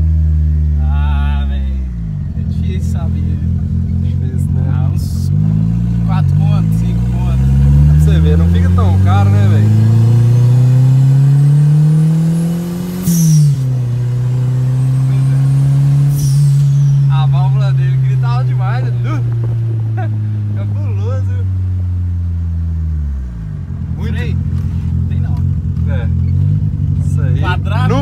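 Turbocharged VW Voyage engine heard from inside the cabin, pulling hard through a gear with its pitch climbing and a faint rising turbo whistle. About thirteen seconds in a sharp hiss cuts in as the throttle comes off, and a second high falling sound follows a few seconds later. The engine pitch then sinks steadily as the car slows, before settling lower.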